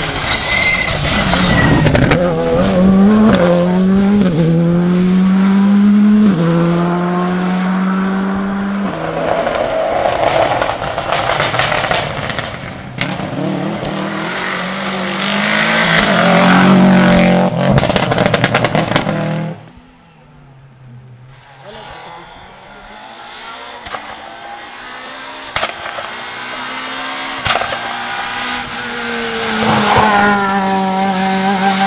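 Rally cars at full throttle, one after another: an engine climbs in pitch through three quick upshifts, then another car goes by loudly. After a sudden cut a fainter engine approaches and grows steadily louder.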